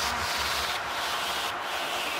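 White-noise effect in an electronic dance music mix, used as a transition between tracks: a steady, fairly quiet hiss with a faint low rumble beneath it, its top end dipping briefly about three times.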